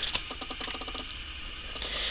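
Quiet handling of an open paper picture book: a couple of soft clicks, then a quick run of light ticks lasting under a second, like paper or binding creaking under the fingers.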